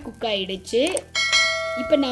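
A bell-like notification ding from a subscribe-button animation sound effect, starting about a second in and ringing steadily for most of a second.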